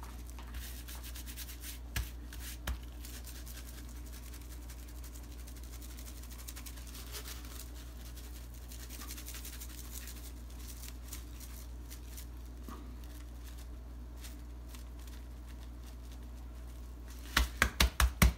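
Coarse kosher salt and black pepper rub shaken from a plastic shaker bottle onto a brisket: a faint steady patter of grains landing on the meat, with a couple of light knocks about two seconds in. Near the end a gloved hand pats the rub down onto the meat in a quick series of loud slaps.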